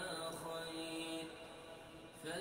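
Qur'an recitation by a man's voice, chanted in long held notes with gliding pitch changes between them; it grows a little quieter toward the end.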